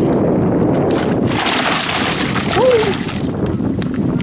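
Wind buffeting the microphone, with about two seconds of water splashing starting about a second in: sheepshead thrashing in a bucket of water. A brief voice sound comes near the middle.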